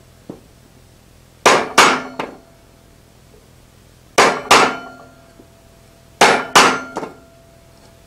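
A hammer striking the head of a hand-held steel scale chisel, driving it into a lump of lead to leave scale-shaped impressions: three pairs of sharp metal blows, the two blows in each pair less than half a second apart, with a short ring after each pair.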